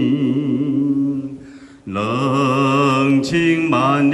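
A man singing a Taiwanese-language song into a microphone, holding a long note with vibrato that fades out, then after a short breath starting the next line on another held note.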